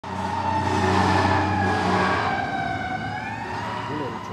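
An emergency-vehicle siren wailing loudly, its pitch sliding slowly down and then back up, over a steady low hum, and growing fainter toward the end.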